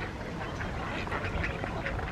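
A flock of mallards quacking, with many short calls overlapping and growing busier about half a second in, over a low steady rumble.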